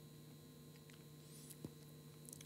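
Near silence: room tone with a faint steady hum and one small click about one and a half seconds in.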